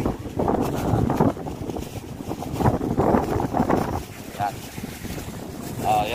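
Wind buffeting the microphone in an uneven rumble, with people's voices talking now and then underneath.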